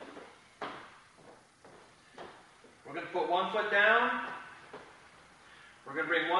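A few light knocks in the first couple of seconds, then a man speaking for about two seconds in the middle.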